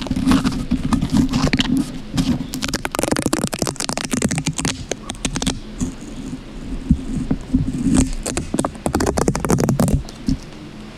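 Long fingernails scratching and picking at a strip of tape stuck on a foam-covered microphone, heard right at the mic as a dense, rapid run of scratches and crackles. A quieter stretch falls in the middle.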